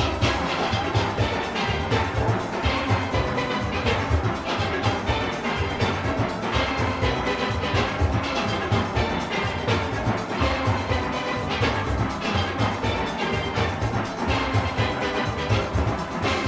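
A large steel orchestra playing: many steel pans, from high tenors to bass pans, sounding together over a steady beat in the bass.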